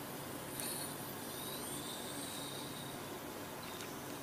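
A pause in the speech: a faint, steady hiss of room tone and background noise.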